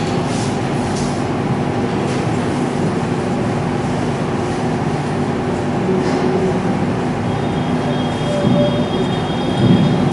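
A steady rumbling background noise with a low hum, even and unbroken, with faint high tones joining near the end.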